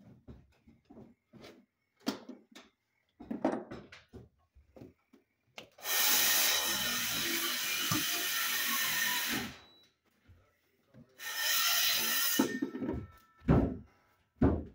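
Tool work at a plastic electrical box on a wooden wall: scattered light knocks, then a long spell of loud scraping and rubbing, and a second shorter spell, with a couple of sharp knocks near the end.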